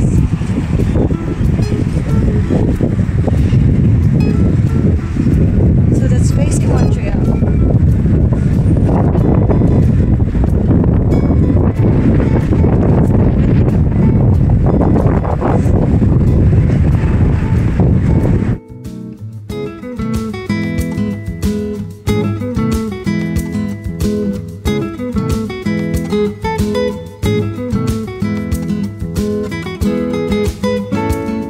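Wind rumbling on a phone's microphone outdoors: a heavy, deep rushing noise for about the first two-thirds. It cuts off suddenly and strummed acoustic guitar music takes over.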